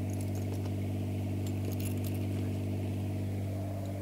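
Steady low drone of an idling engine, with a few faint jingles of keys in hand.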